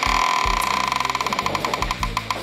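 Marker squeaking on a whiteboard while writing: a shrill squeal in the first second that breaks into a rapid, stuttering run of squeaks.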